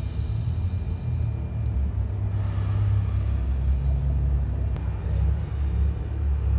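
A steady low rumble of outdoor background noise with no voice over it, a little louder in the second half.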